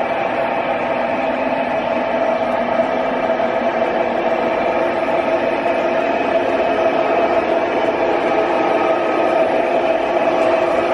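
O gauge three-rail model freight train running: a steady rolling noise of the cars' wheels on the track, with a steady hum, getting slightly louder towards the end.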